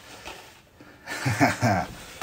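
A man's short chuckle, two quick breathy pulses a little after the middle.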